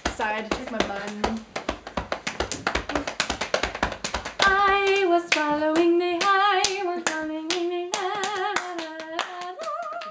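Two people clapping their hands fast, with voices over it. About four and a half seconds in, a singing voice starts holding a long note with vibrato, breaking off and coming back a few times while the clapping goes on.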